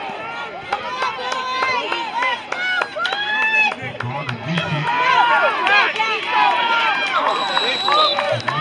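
Spectators shouting and cheering, many voices overlapping, getting louder about halfway through as the play runs.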